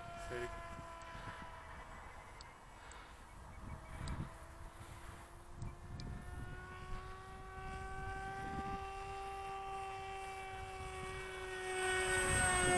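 Electric motor and propeller of a small hand-launched RC plane flying overhead, a steady buzzing drone that rises slightly in pitch and grows louder toward the end as the plane comes closer. A few soft low thumps sound under it.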